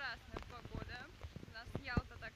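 A woman talking, with a low rumble of wind on the microphone underneath.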